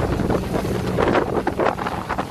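Wind buffeting the microphone on a moving boat, over the rush of white water churning along the hull in its wake, with a steady low rumble underneath and gusty surges.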